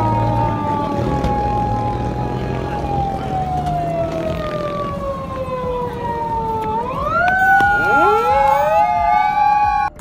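Police car siren wailing, its pitch sinking slowly for about seven seconds, then swinging back up and holding, over a steady low hum.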